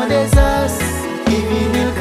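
Theme music with sustained bass notes and pitched instrument lines, and a deep drum hit about a third of a second in.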